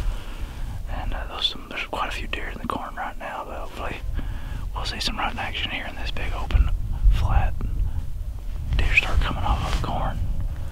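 A man whispering in short phrases, over a gusty low rumble of wind on the microphone.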